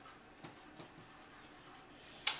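Faint strokes of a marker writing on a whiteboard, a quick series of short scratches starting about half a second in.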